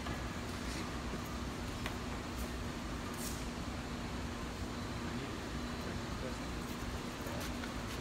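Steady workshop background noise with a constant low hum, a few light clicks and faint distant voices.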